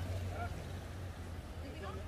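Low, steady rumble of city traffic on rain-wet streets. A few faint, short pitched calls rise over it about half a second in and again near the end.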